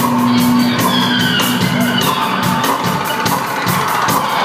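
Live band playing an instrumental passage: a steady, evenly repeating ticking beat under sustained droning tones, with a high tone sliding downward between about one and two seconds in.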